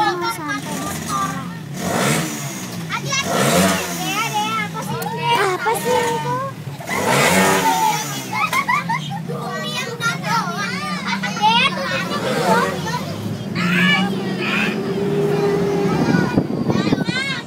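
Children's chatter and calls filling a crowded moving bus, over the steady drone of the bus engine, which glides up and down in pitch a few times as it changes speed.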